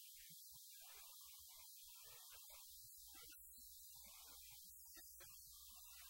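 Near silence: faint hiss, with a low steady electrical hum setting in about halfway through.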